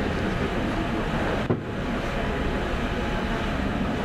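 Indistinct murmur of a crowd talking in a large, echoing hall, over a steady low rumble, with a brief click about one and a half seconds in.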